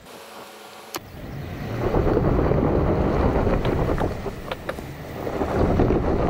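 Chevrolet Silverado ZR2 Bison pickup climbing a loose gravel ledge with its rear differential locked. The engine pulls harder from about a second and a half in, and both rear tires spin and churn the gravel, with stones ticking against the truck. A single sharp click comes about a second in.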